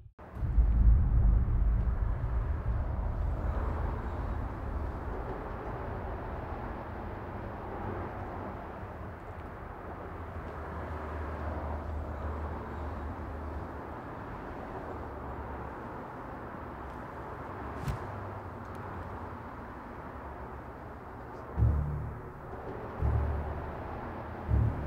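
Outdoor ambience: a steady low rumble with a haze of hiss, like distant traffic, broken by one sharp click past the middle and a couple of low thumps near the end.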